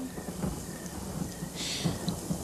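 Steady rain falling with a low rumble of thunder.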